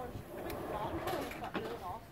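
Indistinct talking of people close by, with a couple of short knocks about half a second and a second in.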